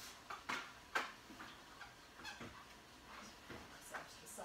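Scattered sharp clicks and light knocks of a graphics card, its riser board and cables being handled and set down on a wooden table, the loudest about a second in.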